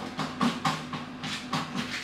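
White paint being stirred with a long stick in a plastic bucket: a rhythmic swishing, about four strokes a second, over a faint low hum.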